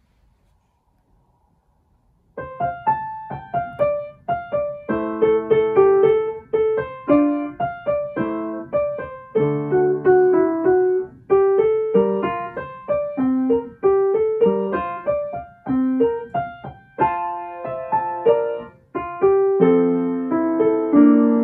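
Upright piano played solo, starting about two seconds in: a simple melody over chords, each note struck and left to ring.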